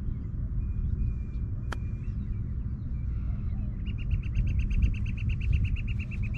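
A single sharp click of a golf club striking the ball on a short chip shot, about two seconds in. From about four seconds on, a bird gives a rapid run of evenly spaced high chirps, about nine a second, over a steady low rumble.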